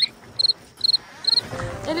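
Electronic beeper sounding four short, high-pitched beeps, about two a second.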